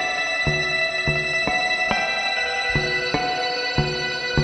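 Electric guitar playing a slow line of single picked notes, about two a second, each note ringing on under the next.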